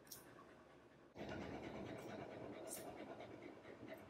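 Faint dog panting that starts about a second in, with a few crisp snips of grooming shears cutting fur.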